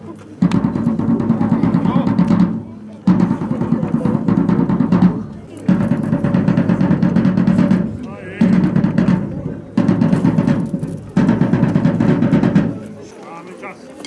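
A drum played in a series of drum rolls, each about one and a half to two seconds long, with short breaks between them.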